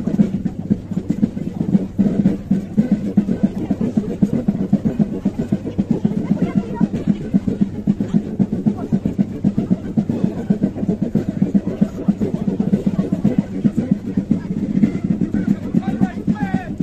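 Outdoor military parade ambience: troops marching past, crowd voices and a band playing in the background, a dense steady din without pauses.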